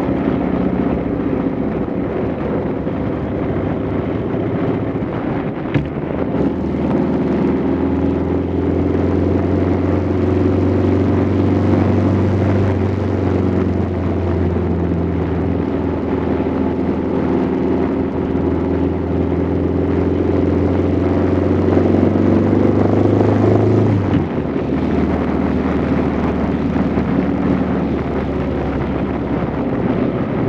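Motorcycle engine running steadily under way, heard from the bike carrying the phone, with a single sharp click about six seconds in. About three-quarters of the way through, the engine note drops suddenly and carries on lower.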